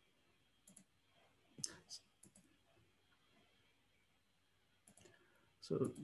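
A few faint, scattered computer clicks over a video-call microphone in a quiet room, the clearest pair about two seconds in; a man starts to speak near the end.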